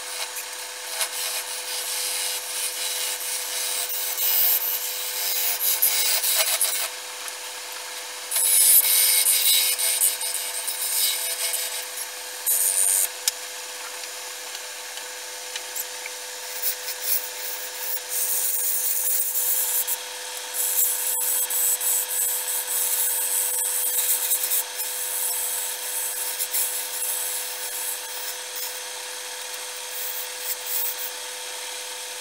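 Wood lathe running with a steady hum while a hand-held turning gouge scrapes and cuts the face of a spinning wooden disc, in several bursts of cutting with short pauses, the longest in the middle.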